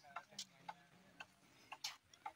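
Near silence: faint outdoor ambience with a few scattered soft clicks, the clearest one near the end.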